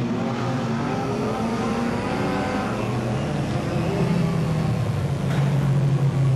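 Several dirt-track production sedan engines running at low revs, a steady drone of overlapping engine notes that grows louder about five seconds in. The field is circling under caution just before a green-flag restart.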